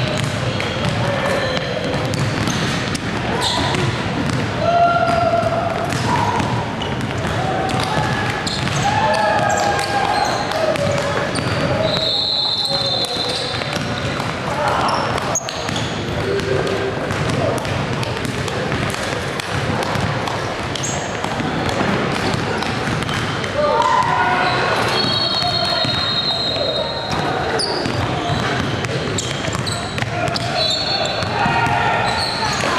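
Many voices chattering in a large gym, with basketballs bouncing on the hardwood court throughout. Brief high squeaks come about twelve seconds in and again around twenty-five seconds, typical of sneakers on the court.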